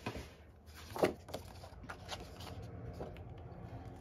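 Paper handling: a loose book page being moved and laid down over cardboard on a table, with a sharp rustle about a second in and softer rustling after.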